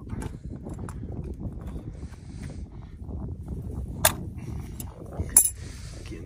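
Two sharp clicks about a second apart, late on, as parts of a tank float valve assembly are handled, over a low steady rumble.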